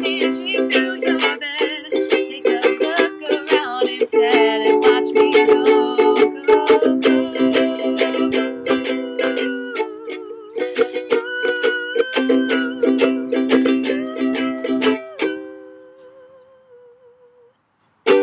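Ukulele strumming chords in an instrumental break, changing chord every two to three seconds. About fifteen seconds in, the last chord is left to ring and dies away almost to silence.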